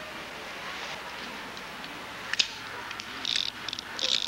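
A handgun being handled: one sharp click a little past halfway and a few lighter clicks near the end, over a steady hiss.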